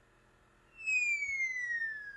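A quiet pause, then about three-quarters of a second in a single long whistle-like tone that glides steadily downward in pitch: a cartoon-style DVD menu transition sound effect.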